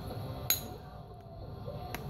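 A copper punch set on the edge of a knapped stone pommel is struck once about half a second in: a sharp metallic clink with a brief high ring, followed by a fainter tap near the end. This is indirect-percussion knapping, punching flakes off the pommel to square it.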